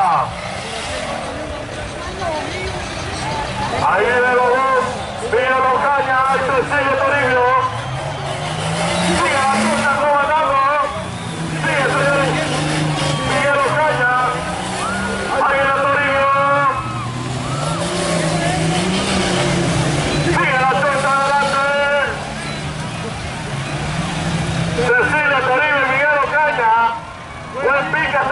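A 4x4 truck's engine revving up and down in the mud, its pitch rising and falling over and over, under a man's voice talking over a loudspeaker.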